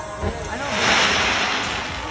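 Fireworks crackling: a loud, dense hiss of crackle-effect stars that swells about half a second in and eases off near the end.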